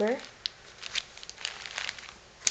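Clear plastic zip-top bag crinkling as it is handled, a run of short irregular crackles and rustles.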